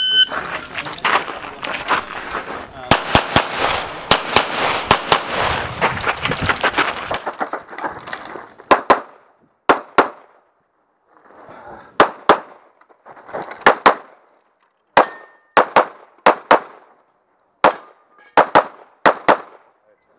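A shot-timer beep, then a pistol stage being shot: a fast, dense run of shots for about seven seconds, then pairs and short strings of shots with pauses between them as the shooter moves to new positions.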